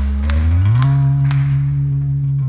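Electric bass guitar holding a low note, then sliding up about an octave and sustaining the higher note, with faint clicks from the backing track above it.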